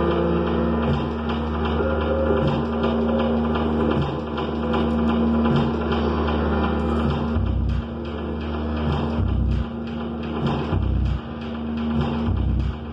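Live experimental electronic music: layered low drones and a steady held tone, with deep bass pulses coming in irregularly from about halfway through.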